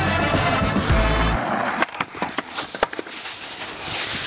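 Music plays, then cuts off suddenly about a second and a half in. A skateboard then clatters in a run of sharp knocks as the skater crashes and falls.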